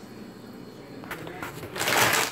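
A quiet pause, then a single click about a second in and a brief rustle of handling near the end.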